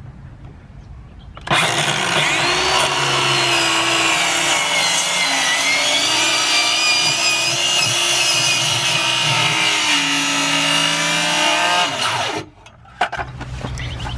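Ryobi cordless circular saw starting about a second and a half in and running for about eleven seconds as it cuts through a plywood board, its motor whine sagging in pitch under load, then stopping abruptly; a brief clatter follows near the end.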